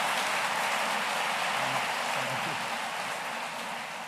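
Audience applauding, a steady dense clatter of many hands clapping that begins to die down near the end.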